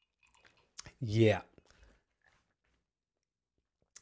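Mostly near silence, broken by a couple of small mouth clicks and a single short spoken "yeah" about a second in.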